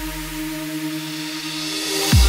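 Sped-up nightcore electronic dance music in an instrumental build-up with no vocals: a held synth chord sustains while a low bass tone fades out in the first second. A hissing noise sweep rises toward the end, leading into the drop.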